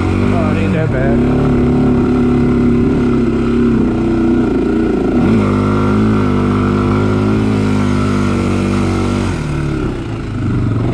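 Honda 400EX-type sport quad's single-cylinder four-stroke engine running at steady revs. Its pitch drops about a second in, dips and climbs back about five seconds in, and falls again near the end.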